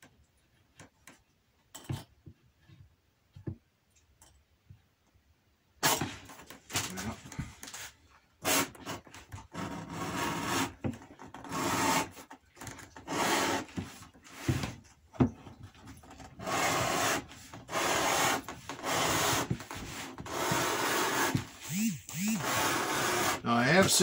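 Wooden strap cutter drawn along the edge of a hide of 6–7 oz holster and strap leather, its blade slicing off a 2½-inch strap. After a few faint clicks, a steady scraping starts about six seconds in and goes on in long strokes broken by short pauses.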